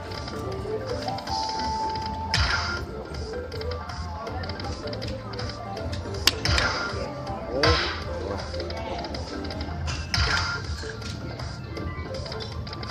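Lightning Link poker machine's game music and sound effects during its hold-and-spin feature: a spin sound three times, about 2 s in, 7.5 s in and 10 s in, each with a short falling sweep, over a steady jingle, with one sharp click about 6 s in.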